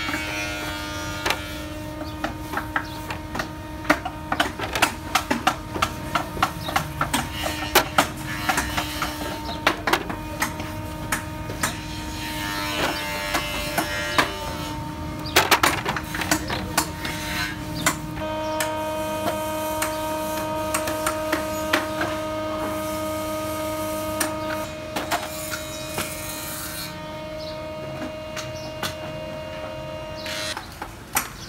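Workshop noise: a steady electric machine hum whose pitch shifts about two-thirds of the way through, with frequent sharp clicks and knocks and a few short patches of scraping hiss.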